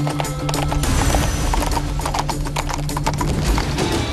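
Horses' hooves clip-clopping as several horses move along, with music playing underneath.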